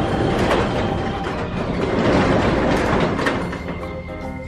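Roll-up garage door being raised: one continuous noisy run of about four seconds that dies away near the end as the door comes fully open.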